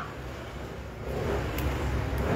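Low, steady rumble of road traffic, growing a little louder about a second in.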